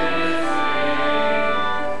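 A congregation singing a slow hymn with organ accompaniment, each note held and changing about every half second.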